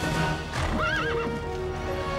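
A horse whinnies once about halfway through, a short wavering call, over sustained orchestral background music.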